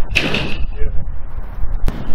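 Wind buffeting the microphone outdoors, a gusty low rumble, with a sharp click just before the end.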